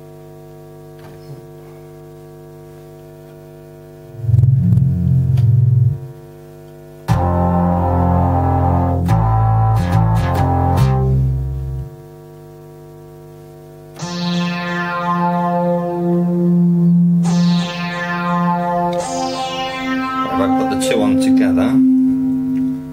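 Novation XioSynth 49's built-in synthesizer playing several patches: a few low bass notes, then a thicker low bass passage, then bright notes that quickly fade. A steady mains hum from the speaker system sits underneath and is heard alone for the first few seconds.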